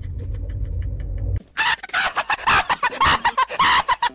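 Low car-cabin rumble with faint, rapid pulses of a man's laughter. After about a second and a half it cuts suddenly to a young man's loud, shrill screaming in quick, choppy bursts.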